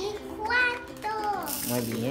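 A young child's voice speaking in short bursts, with a brief hiss near the end.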